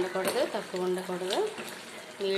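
A woman speaking for about the first second and a half, then a quieter stretch, over a metal ladle stirring thick lentil curry in a pan.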